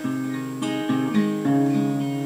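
Acoustic guitar fingerpicked in a folk-blues pattern, plucked notes changing every fraction of a second with no voice.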